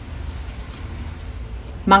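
A steady low hum with a faint hiss and no distinct grating or scraping strokes. A woman's voice starts just before the end.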